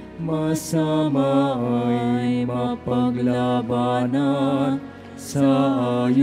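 A single voice sings a slow hymn in long, held notes with vibrato, over sustained keyboard or organ chords. Brief 's' hisses of the words come about half a second in and again near the end.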